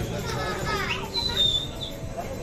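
Excited voices of people and children calling out, with a long high-pitched squeal about a second in.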